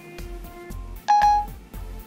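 iPhone Voice Control chime: one short electronic beep about a second in, marking that it has stopped listening and taken the spoken command. Background music with a steady beat runs underneath.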